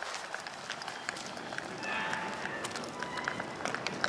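Footsteps on pavement while walking outdoors, with irregular short clicks, over a street background with faint distant voices.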